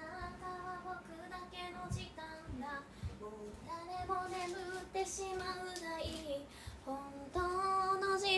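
A young woman's voice singing a slow melody in several phrases with long held notes, with no accompaniment heard.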